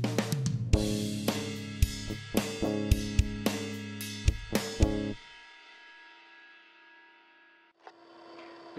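A drum loop plays under a single electric guitar chord that is strummed and left to ring, the guitar heard dry as a clean, unprocessed DI signal with no amp or cab modelling. About five seconds in, the drums and the low end stop. The chord rings on more quietly, fading, and cuts off near the end.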